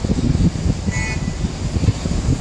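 Wind buffeting the microphone over the steady hum of city traffic below. About a second in, a vehicle horn gives one short, distant toot.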